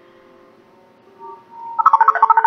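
Cartoon soundtrack with a faint low hum, then near the end a quick run of short, high electronic beeps at one pitch, like an incoming call ringing on a communicator.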